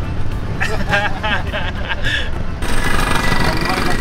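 Steady low rumble of a vehicle driving slowly, heard from inside the cab. A short stretch of voice sounds about half a second to two seconds in, then a hissy noise near the end.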